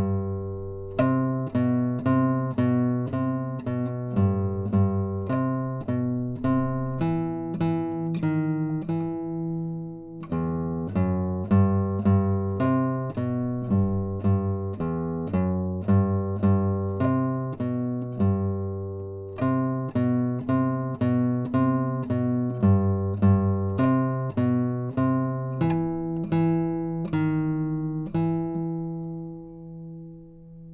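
Nylon-string classical guitar fingerpicked solo, playing the second-guitar part of a duet arrangement in an even run of plucked notes, with a short break a third of the way through. Near the end it closes on a chord that is left to ring and fade.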